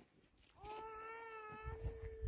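A single long call or hum holding one steady note, beginning about half a second in and lasting about two seconds. A low rumble joins it near the end.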